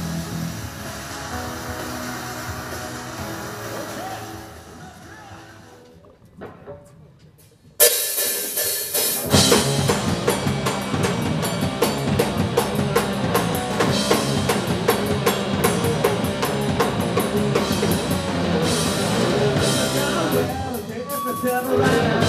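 Live rock band with drum kit and electric bass, played loud through the hall's PA. The music dies away about a quarter of the way in, there is a short near-quiet pause, then the full band comes back in suddenly with driving drums.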